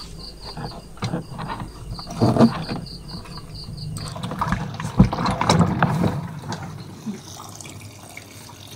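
Water gurgling and sloshing in the clogged spin-dryer drain of a twin-tub washing machine as a finger probes and clears the hole, with a couple of sharp knocks. The drain is blocked by a piece of clothing.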